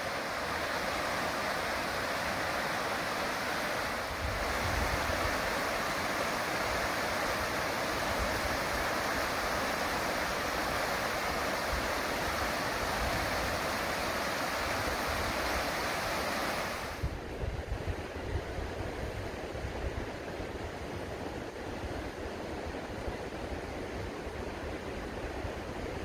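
Deschutes River rapids rushing steadily. About two-thirds of the way through the sound changes abruptly to a duller, quieter rush with wind buffeting the microphone in uneven gusts.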